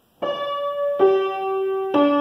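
Upright piano playing three single notes, each held about a second, that descend by leaps rather than steps: a descending skipwise melody.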